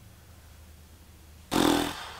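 A man blowing air out hard through pursed lips, a short exasperated "pfff" with a slight lip buzz, about a second and a half in, after faint room tone. It is a sigh of being overwhelmed.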